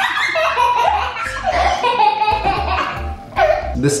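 A boy laughing hard and high-pitched, over background music with a steady bass beat.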